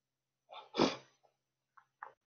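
A man sneezes once: a short, soft lead-in, then a sharp, loud burst about a second in.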